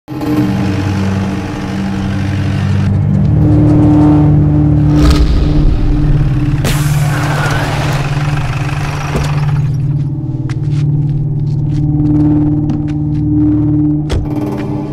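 A jeep's engine running under a steady low drone of film score, with a long gritty skid of tyres sliding on a dusty dirt road from about seven to nine seconds in. Short sharp clicks and knocks follow near the end.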